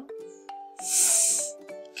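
Background music with sustained notes, and about a second in a long hissing 'sss' spoken by one voice: the soft c sound of 'ce'.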